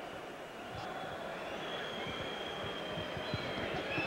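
Steady hubbub of a large indoor crowd waiting in an arena, with a faint thin high tone coming in about halfway through.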